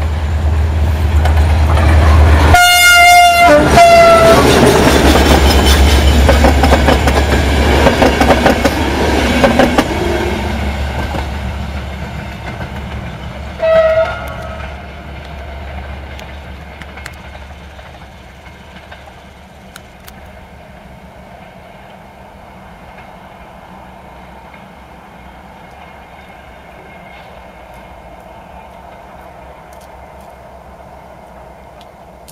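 Diesel-hauled passenger train passing close: the locomotive sounds one long horn blast of several tones whose pitch drops as it goes by, with an engine rumble underneath. The coaches' wheels clatter over the rail joints as they pass. A second, shorter horn blast comes from further off, about halfway through, and the train's sound fades as it moves away.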